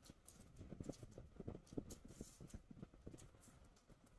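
Close-miked chewing and mouth sounds of a person eating a mouthful of chicken biryani: soft, irregular smacks and clicks, several a second, faint overall.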